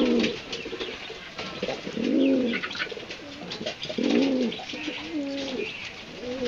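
Domestic pigeons cooing: a run of low, arched coos, the loudest about two and four seconds in, with short clicks between them.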